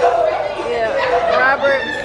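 Voices of several people talking and chattering in a large hall.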